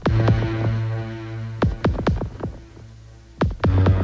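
Electronic body music (EBM) instrumental passage: sharp electronic beat hits over a low held synth note and chord. The note swells in at the start, fades away, and comes back about three and a half seconds later.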